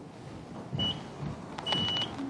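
Two short high-pitched beeps, the first brief and the second about half a second long near the end, with a few soft knocks around them.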